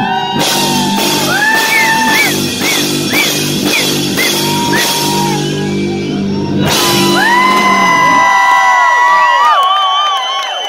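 Live rock band with bass, drums and guitars playing under singing. About eight seconds in the band drops out and voices hold long notes as the song closes.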